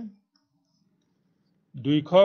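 A man speaking, with his words trailing off just after the start, a silent gap, and his speech resuming near the end.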